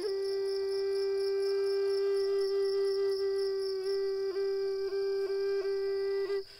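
Music: a flute holds one long steady note, broken by a few quick dips in pitch in its second half, over a steady bed of chirping crickets.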